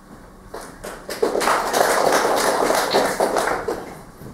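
Audience applauding: a few claps about half a second in, swelling to full applause after a second, then dying away near the end.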